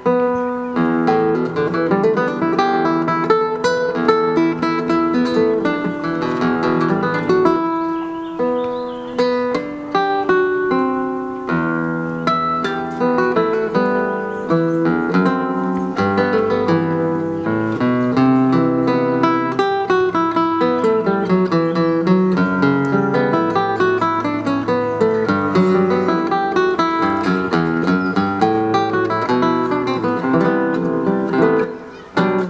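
Nylon-string classical guitar playing a concerto passage: quick plucked arpeggios and running notes, mixed with chords.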